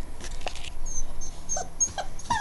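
Giant schnauzer puppy, about six weeks old, whimpering: a run of short, very high-pitched squeaks in the second half.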